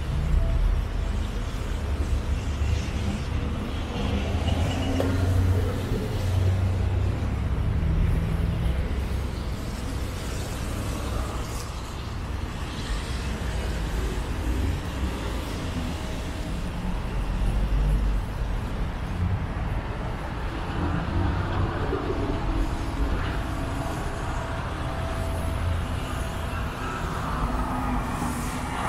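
Road traffic close by on a wet street: cars, SUVs and vans idling and rolling past, with engines and tyres making a steady low rumble.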